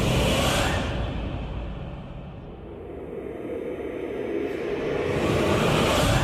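Channel-ident whoosh sound effects over a low rumbling music bed: a whoosh fading away in the first second, the sound sinking to its quietest midway, then swelling back up into another whoosh near the end.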